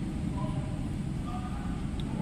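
Steady low background rumble with faint distant voices: the ambient noise being taken as the baseline reading before the bike's ignition is switched on.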